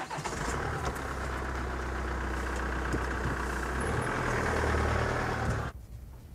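Car engine running steadily, a little louder in the last couple of seconds, cutting off abruptly near the end.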